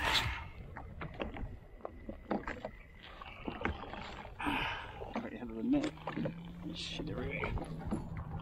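Irregular knocks, clicks and rustling as a large snapper is lifted out of a landing net on a jet ski, with water lapping against the hull. Short breathy sounds from the angler come about four and a half and seven seconds in.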